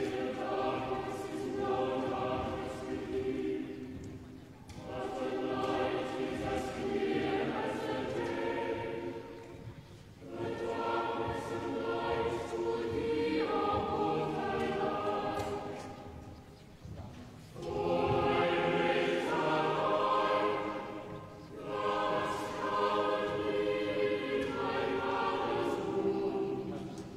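A choir singing slow, sustained phrases, each about five seconds long, with brief breaks between them.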